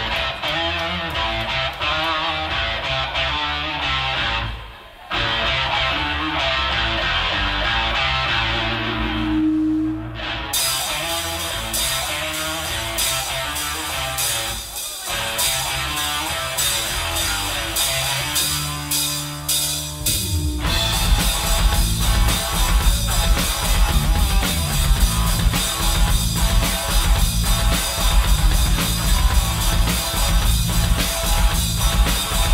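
Live rock band with electric guitars, bass guitar and drum kit playing the instrumental opening of a song. Guitar carries it alone at first, cymbals come in about ten seconds in, and the full band with bass and kick drum comes in hard about twenty seconds in.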